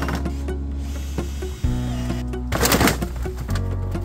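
Background music with a steady bass line and sustained chords that change every second or two, and a brief hissing burst about two-thirds of the way through.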